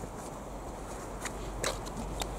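Quiet background noise: a low steady rumble with a few soft clicks about halfway through.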